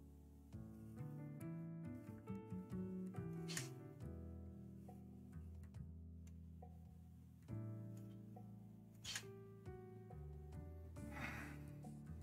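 Faint background music of held, changing notes, with a couple of light clicks, one about a third of the way in and one about three-quarters through.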